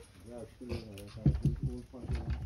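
Men's voices on a fishing boat, indistinct, opening with a drawn-out sliding vocal sound and followed by short bursts of speech.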